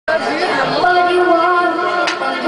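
A loud voice that slides in pitch at first, then holds one long steady note for about a second.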